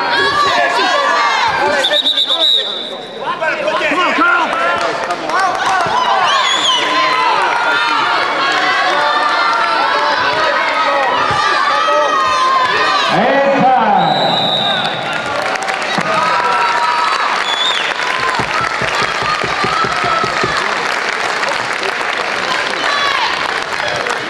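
Crowd of spectators shouting and cheering on fighters at a full-contact karate bout, many voices overlapping. A short high-pitched tone sounds twice, about two seconds in and about fourteen seconds in.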